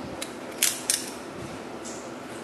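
A few sharp clicks, the loudest about half a second in, from the slider of a green snap-off utility knife being pushed to extend its blade.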